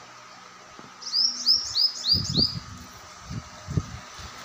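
A small bird chirping a quick run of about six short high notes, each sliding down in pitch, over about a second and a half. A few low thumps come later.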